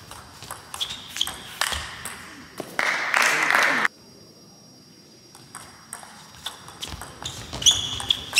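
Table tennis ball struck back and forth in a rally, quick sharp clicks of ball on bat and table, broken about three seconds in by a loud shout lasting about a second; another rally of clicks starts near the end.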